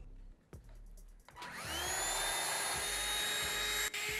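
A small electric motor in a handheld device starts up about a second and a half in, its whine rising in pitch and then holding steady.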